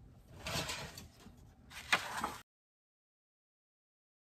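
Paper being handled and slid about on a cutting mat, then a single sharp knock just before the two-second mark and a little more rustling. After that the sound cuts off abruptly to dead silence.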